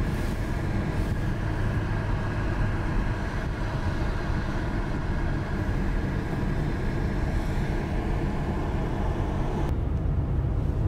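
Steady road noise inside a moving car: a low rumble of tyres and engine, with a faint hum above it. The higher hiss drops away just before the end.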